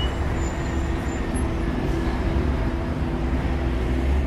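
Steady deep rumbling drone, heavy in the bass, with a faint hum of a few steady tones above it: a produced sound effect under an animated logo intro, not a real vehicle.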